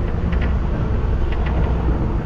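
Passenger bus driving along a rough dirt road, heard from inside: a steady low rumble of engine and tyres with a few faint ticks.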